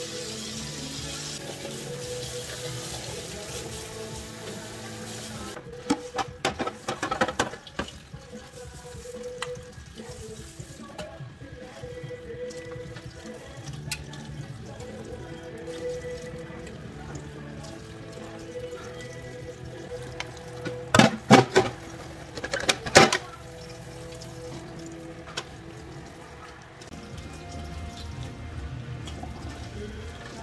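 Kitchen tap running into a stainless steel sink while dishes and pans are washed by hand, with bursts of clattering as they knock together, loudest about two-thirds of the way through. Korean Christian music plays steadily underneath.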